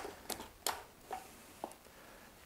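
A few faint, short soft taps and wet clicks from a paint roller being worked in a bucket of Hydro Ban liquid waterproofing membrane as it is loaded.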